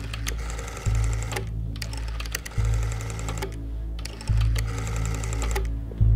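An old rotary desk telephone clicks rapidly in three bursts of about a second each as it is worked by hand, with no dial tone coming back: the line is dead. Under it, low music swells in a slow pulse about every second and a half.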